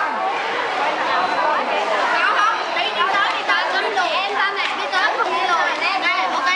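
Several people talking at once: steady, overlapping conversational chatter of a group, with no single voice standing out.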